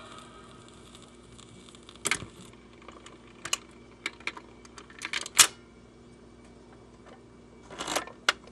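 A record player running after the music on a 78 rpm record has ended: scattered sharp clicks and pops, the loudest about five and a half seconds in, over a faint steady hum.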